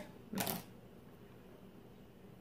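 A single short, breathy spoken "no", then faint steady room tone.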